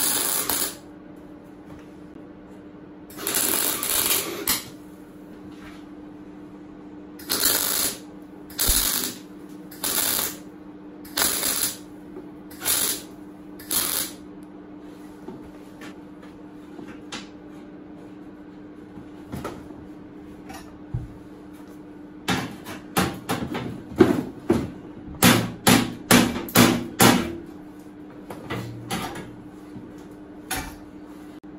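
Clarke MIG 135TE Turbo welder stitch-welding a steel car door panel in short bursts of arc, about eight in the first fourteen seconds, one a little longer. The welds are kept short to spread the heat and stop the thin panel warping. A quicker run of short sharp bursts comes near the end, over a steady low hum.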